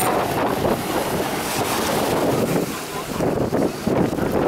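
Wind buffeting the microphone over small waves washing in around the waders' legs in shallow sea water.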